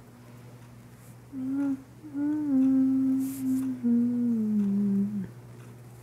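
A person humming a short phrase of a few notes: a brief note about a second in, a longer held note, then a lower note that slides down and stops about a second before the end. A steady low drone continues underneath.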